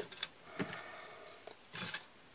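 Faint handling noise from a plastic PVC pipe being moved on a stone worktop: a light tick, then a soft rub.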